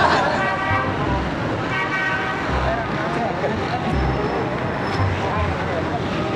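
Road traffic running steadily, with vehicle horns sounding twice in the first two seconds, amid voices of people around.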